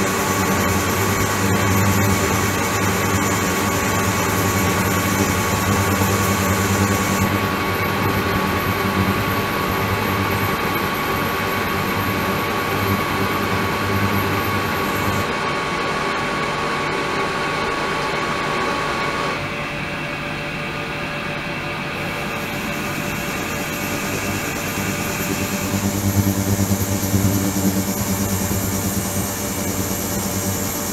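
Ultrasonic tank running with its water circulating: a steady hum and hiss with a thin high whine. The mix changes abruptly several times, the whine dropping out a little after the middle and the hum returning strongly near the end.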